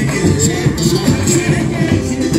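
Samba-school music playing loudly and without a break: a samba-enredo with dense percussion.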